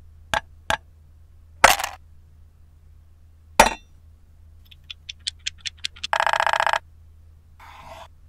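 Cleaver chopping through a wooden figurine on a wooden cutting board: a few sharp knocks, the two later ones the loudest. A quick run of about seven short high pips follows, then a buzzy tone lasting under a second.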